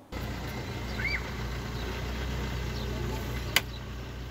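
Steady low outdoor background rumble, with a short chirp about a second in and a single sharp click near the end.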